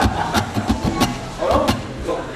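A man laughing briefly on stage, through a live microphone, broken up by several sharp clicks.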